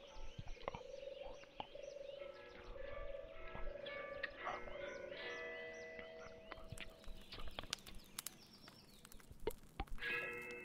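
Croaking animal calls with short chirps over a few held tones, with scattered clicks in the second half.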